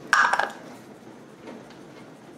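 A seasoning-salt bottle is handled and shaken over a glass bowl of raw chicken wings: a brief clatter in the first half second, then faint shaking.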